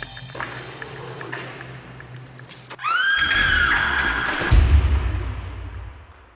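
About three seconds in, over music, a person's high scream rises and then holds for about a second and a half. A heavy low thud comes as the scream ends, typical of a climber falling after the unknotted rope end runs through the belay device.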